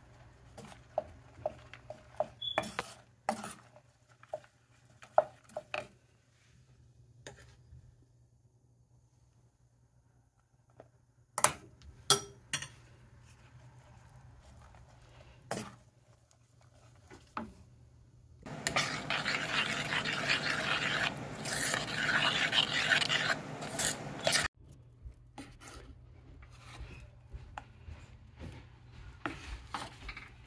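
A spatula stirring and scraping a thick fruit-cake batter against the side of a metal pot: scattered scrapes and knocks, with a quiet stretch before the middle. Past the middle comes a louder, steady rushing noise lasting about six seconds that cuts off suddenly.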